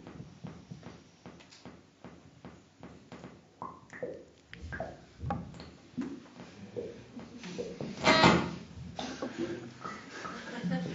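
Sparse improvised electronic sounds from handmade analog synthesizers: scattered clicks and a few short falling bleeps, then a louder noisy burst about eight seconds in.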